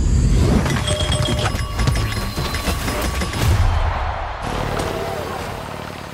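Loud, busy cartoon action sound effects: a dense run of crashes and impacts with a heavy low rumble over music, easing down over the last couple of seconds.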